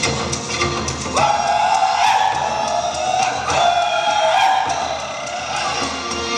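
Live Mongolian folk ensemble music: horsehead fiddles (morin khuur) with a drum. A long high note enters about a second in and a second one is held from the middle, fading near the end.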